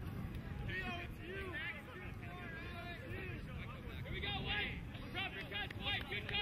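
Distant voices of players and spectators calling and chattering across an open field, many short overlapping shouts, over a steady low background rumble.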